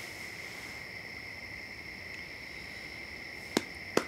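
Steady night chorus of crickets, a continuous shrill trill, with one sharp click near the end.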